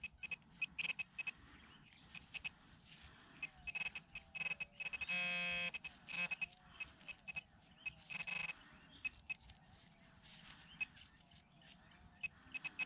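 Hand digger working into dry soil: a string of short scrapes and clicks. About five seconds in, a steady pitched tone sounds for under a second.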